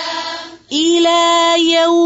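Quran recitation in melodic tajweed style: one chanted phrase trails off about half a second in, and after a brief breath a single long note is held steadily to the end.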